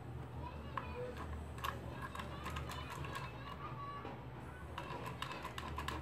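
Scattered light plastic clicks and taps from fingers handling a small WEG contactor and thermal overload relay inside a plastic starter enclosure.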